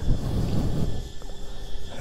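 Wind buffeting the microphone in an uneven low rumble, over a steady faint high chirring of insects such as crickets or cicadas.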